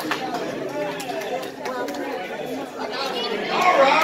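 Crowd chatter from a roomful of square dancers in a large hall, with many voices talking over one another. The voices grow louder near the end.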